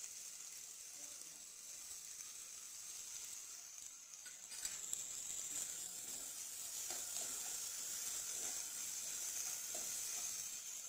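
Diced vegetables sizzling in hot oil in a nonstick kadai, stirred now and then with a steel ladle. The sizzle is steady and grows a little louder about halfway through.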